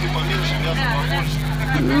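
Indistinct voices over a steady low hum, then a woman's drawn-out 'hmm' near the end.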